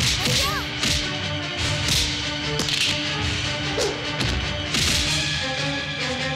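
Film fight sound effects: a string of sharp punch hits and swishes, several in a row about a second apart, over a held background score.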